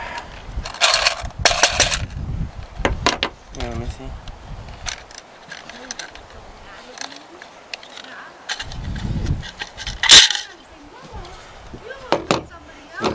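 Metal clicks, clinks and scrapes from a small-engine recoil starter being handled and taken apart, its pulley coming out of the pressed-steel housing, with a louder rattle about ten seconds in.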